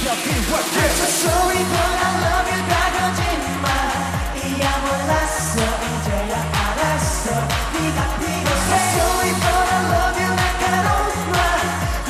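Live K-pop boy-group performance: male voices singing over a dance-pop backing track with a steady, pulsing bass beat.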